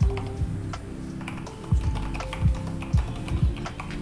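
Typing on a computer keyboard: irregular keystroke clicks, some landing with a low thud, over steady background music.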